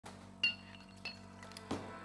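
Glass bottles clinking: one sharp, ringing chink about half a second in, then lighter clinks.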